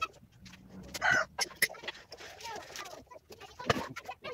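A chicken clucking, loudest about a second in, over scattered light clicks and taps, with a sharper knock near the end.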